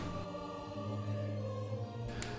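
Quiet background music: a choir holding long, steady notes.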